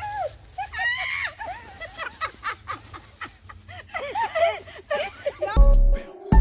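Women laughing and chattering, then about five and a half seconds in, electronic music with heavy bass beats cuts in loudly.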